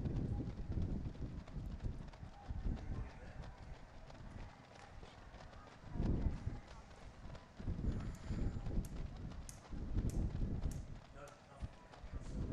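Footfalls of a large pack of marathon runners on the road: many quick steps overlapping into a continuous patter over a low rumble, swelling a few times.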